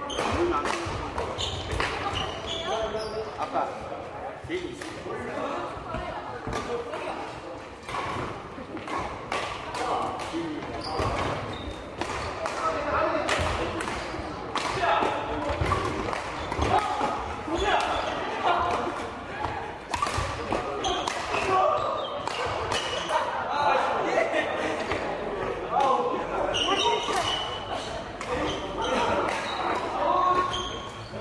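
Badminton rackets striking shuttlecocks in doubles rallies across several courts: sharp cracks at irregular intervals, echoing in a large sports hall, over indistinct chatter of players.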